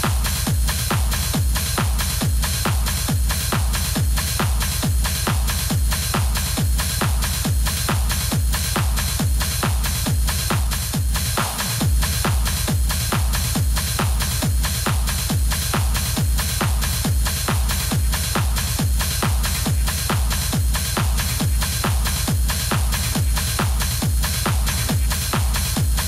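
Techno DJ mix with a fast, steady kick drum, heavy bass and hi-hats. Just before the midpoint the kick and bass drop out for about half a second, then come straight back in.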